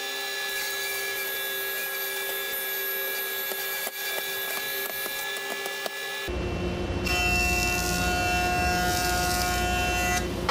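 A thickness planer running steadily, with a few light clicks. About six seconds in, the sound changes abruptly to a louder, deeper machine noise: a Grizzly jointer at work as a board is pushed across it.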